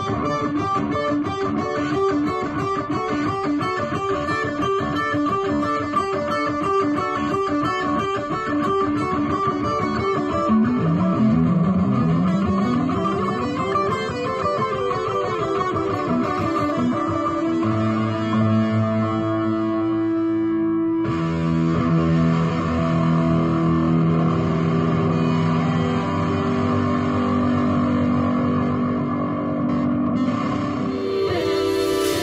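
Electric guitar lead played through an Eventide Rose delay and modulation pedal in the amp's effects loop, set to a thick lead preset. Fast picked lines open the passage, then runs rise and fall, and long held notes fill the second half.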